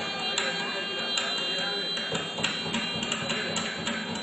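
Mridangam strokes at irregular intervals, coming closer together in the second half, over a steady drone.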